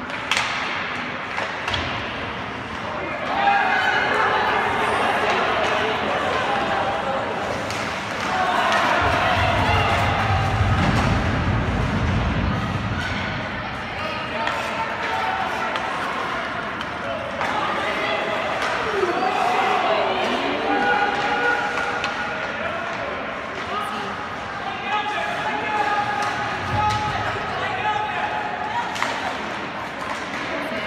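Ice hockey arena sound during play: raised voices of spectators and players echo through the rink, with scattered sharp knocks and thuds from sticks, puck and boards.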